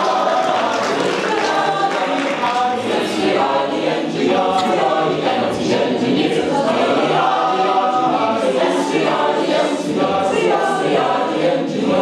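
A mixed-voice a cappella group, men and women, singing together in harmony without instruments.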